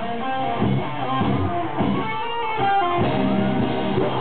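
Live rock band with electric guitars: a guitar-led break where the bass and drums drop back, with bent lead notes, before the full band comes back in about three seconds in.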